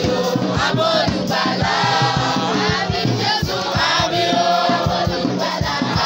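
A group of schoolchildren singing together in chorus, with a steady percussive beat.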